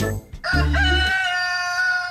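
Rooster crowing: one long, steady held call starting about half a second in, with a short low thud as it begins.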